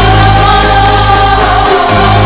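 Sitar played with a slide like a lap steel guitar, vichitra veena style, holding a long gliding melody note that bends slightly in pitch. It plays over a backing track with a steady bass line that drops out briefly near the end.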